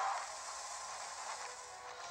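Film soundtrack music: a sustained, airy wash of sound with faint held tones, easing down in the first half second and then holding steady.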